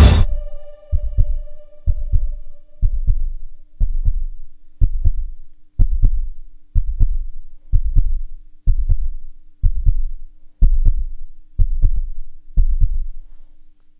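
Heartbeat sound effect: about thirteen double low thumps, roughly one a second, over a faint steady hum. The last chord of the music fades out in the first four seconds.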